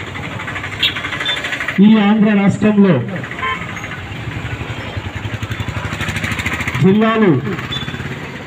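Loud shouted slogans through a microphone and PA, in two short bursts, about two seconds in and again near the end. In the gap between them a small motor-vehicle engine, such as a motorcycle, runs with a rapid steady pulse.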